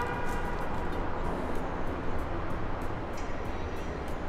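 Steady low rumble and hiss of a parking garage with faint, regular high ticks; the Camaro's engine stays silent because the remote start has failed.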